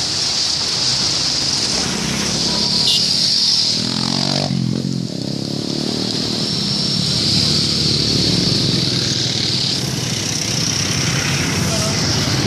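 Road traffic running past on a busy street. A vehicle engine swells and fades about four to five seconds in.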